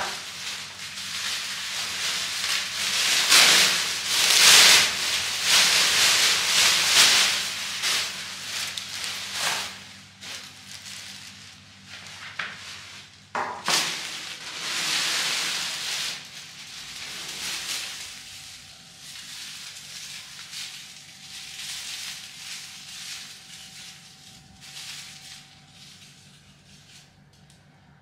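Clear plastic wrapping crinkling and rustling as it is pulled off a tall olive plant. It comes in loud bursts through the first ten seconds and again around fourteen seconds, then quieter rustling of handling.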